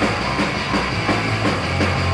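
Hardcore punk band playing fast at full tilt: distorted electric guitar, bass and rapid drumming, recorded raw on a rehearsal-room cassette.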